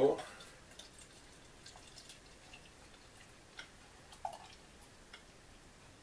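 Pale ale poured slowly from a glass bottle into a tilted glass: a faint, quiet trickle with a few light drip-like ticks.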